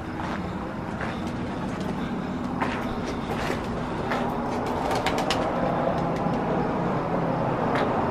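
A motor vehicle's engine running nearby: a steady low hum that grows louder over the first few seconds and then holds, with a few faint clicks.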